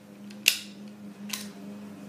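Two sharp plastic clicks from a toy yo-yo being worked in and out of its plastic holster, the first, about half a second in, louder than the second.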